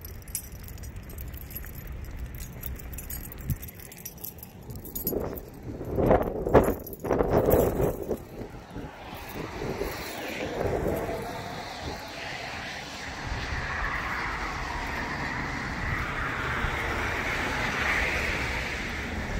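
Traffic on a wet road: a steady tyre hiss that builds over the second half, over a low rumble. About five seconds in comes a few seconds of loud rubbing and knocking.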